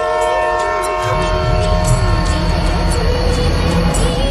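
Train horn sounding one long, steady multi-tone blast as a locomotive approaches the platform, fading out about halfway, while the low rumble of the locomotive and its wheels sets in about a second in and grows as the train passes close.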